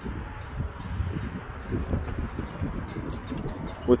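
2020 GMC Terrain's power liftgate opening under its motor, heard as a low, uneven rumble.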